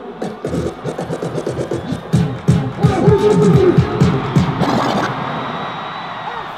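DJ scratching a record over loud music: rapid back-and-forth strokes with quick swooping pitch sweeps, stopping about five seconds in while the music carries on.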